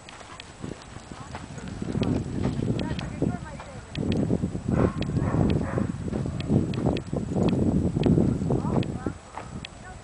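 Footsteps on loose sand, in quick runs of soft thuds, the pace of someone walking fast or jogging.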